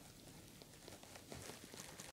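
Near silence, with a few faint small ticks and rustles of fabric being handled at a sewing machine in the second half.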